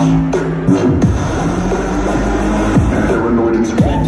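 Loud electronic bass music from a live DJ set through a concert sound system: heavy synth bass lines with steep falling pitch swoops, about three times.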